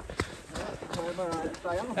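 Footfalls of a person running on a trail, a string of soft repeated thuds, with a voice speaking more quietly through the second half.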